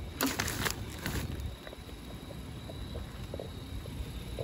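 Plastic trash bags rustling and crinkling as they are handled, in two short bursts within the first second and a half, over a steady low rumble.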